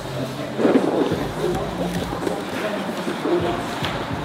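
Indistinct voices and general activity in a grappling gym, with a few short knocks from the training going on.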